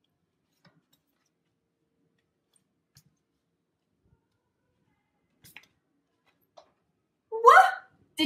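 Mostly near silence with a few faint ticks of flashcards being handled, then near the end a short, loud vocal exclamation from a woman, a gasp-like 'ooh' with a gliding pitch.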